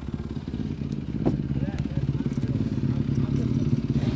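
Motocross bike engines running steadily in the background, a low continuous hum. A single sharp click about a second in.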